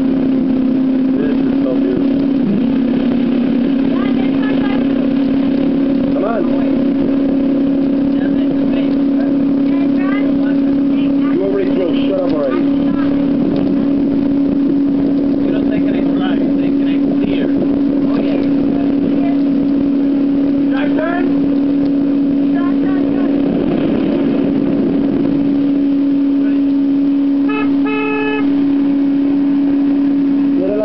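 Motorboat engine running at a steady cruising speed, a loud continuous drone with rushing water and wind over it.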